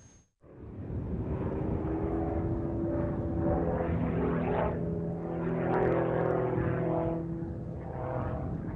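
Propeller engine of the GEMPRO single-seat aerobatic plane running as it flies overhead, fading in about half a second in. Its pitch drifts up and down a little as the plane manoeuvres.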